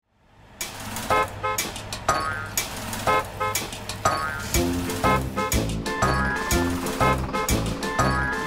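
Upbeat instrumental intro music to a children's song, starting out of a brief silence with a steady beat and bright melody notes. A bass line joins about halfway through.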